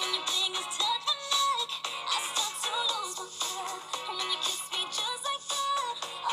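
Pop song playing: a woman singing a melodic line over a full backing track.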